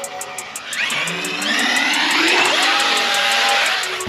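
RC car's motor revving up, a whine that rises in pitch about a second in and holds high and loud for about two seconds before easing off near the end. Background music with a steady beat plays underneath.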